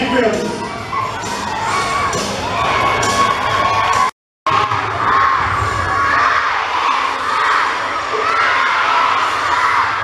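A crowd of children cheering and shouting, many high voices at once. The sound cuts out completely for a moment about four seconds in.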